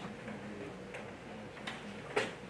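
A few faint, irregular clicks over low room noise in a quiet hall.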